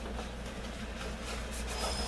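Steady low hum and hiss of room tone, with faint rustling and handling noise.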